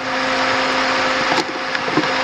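Pentair SuperFlo VS variable-speed pool pump running at 3450 rpm: a loud, steady rush of water with a steady motor hum. The pump has started up normally after the impeller blockage behind its Err 0002 code was cleared.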